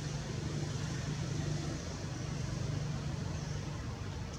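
A steady low motor hum, like an engine running nearby, over an even background hiss.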